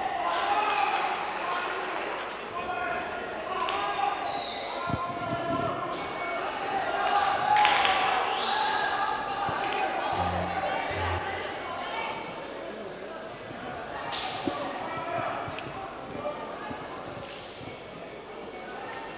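Kickboxing bout in a hall: dull thuds of gloved strikes and feet landing on the ring canvas, a few sharp ones standing out, over shouting voices from ringside.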